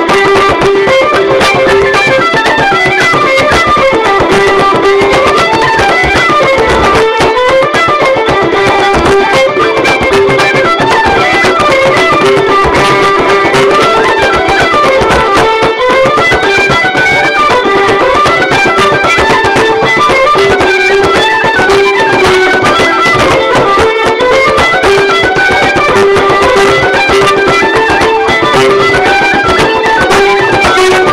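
Irish traditional dance tune played on fiddle and other melody instruments over a steady held drone note, with a bodhrán struck with a tipper in a steady beat along with it.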